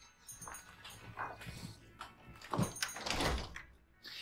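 A shop's glass-paned front door opening and closing, with a few short noises. The loudest stretch comes about two and a half to three and a half seconds in.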